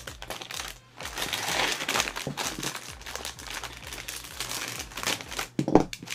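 Clear plastic bag crinkling and rustling as the plastic model-kit runners inside it are handled and unwrapped, with a sharper, louder crackle near the end.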